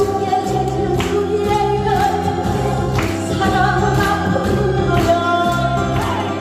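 A woman singing a Korean trot song into a microphone through the PA, holding long, wavering notes over amplified backing music with a steady beat and an acoustic guitar.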